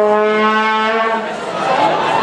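A horn blown in a crowd: one steady note held, stopping a little past a second in, over the crowd's chatter.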